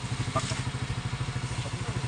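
Small motorcycle engine running steadily at low speed while riding, a fast, even low putter.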